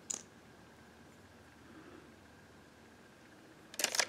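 Quiet room tone with a single short, sharp click at the start. Near the end comes a loud burst of rapid clicks and rustling: hand-handling noise close to the microphone.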